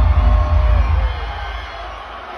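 Heavy bass from the concert sound system fading out about a second and a half in, under an arena crowd cheering and whooping.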